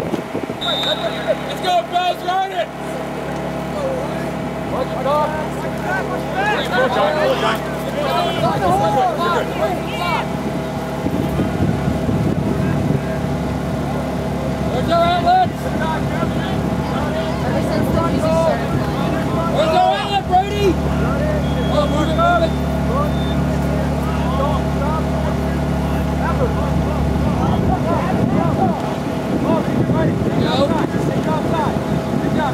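Indistinct shouts and calls from lacrosse players and coaches across the field, scattered through the whole stretch, over a steady mechanical hum like a running motor.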